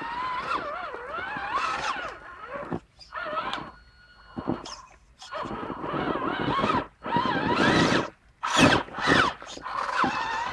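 Traxxas Summit RC truck's electric motor and geared drivetrain whining, the pitch rising and falling with each burst of throttle as it crawls over rocks, with short pauses between bursts.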